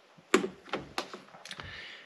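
Handheld OBD2 code reader and its cable being picked up and handled: four sharp plastic clicks and taps, the first and loudest about a third of a second in, with a faint rustle near the end.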